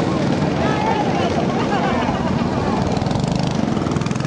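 Small engine of a motorized magic-carpet cart buzzing steadily as it drives past, over the chatter of a crowd.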